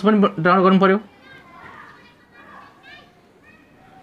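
A man speaks briefly in the first second. After that come faint, distant children's voices, with short pitch-bending calls.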